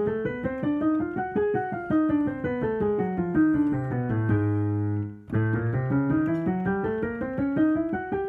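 Digital piano played in scale practice: a quick run of notes climbs and then descends, ending on a held chord about four seconds in. After a short break, the next run starts and rises and falls again.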